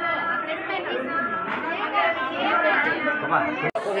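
Voices of several people talking at once, a steady chatter, with a brief dropout near the end.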